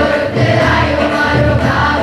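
Large choir of children and adults singing a Rajasthani folk song together, with a low rhythmic pulse underneath.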